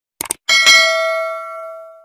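Two quick mouse clicks, then a notification-bell ding about half a second in that rings and fades away over about a second and a half: the sound effect of a subscribe button's bell being clicked.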